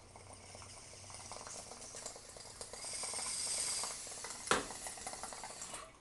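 Water bubbling in a glass bottle water pipe as smoke is drawn through it, growing louder to a peak about three to four seconds in, then stopping. A single short sharp sound follows about four and a half seconds in.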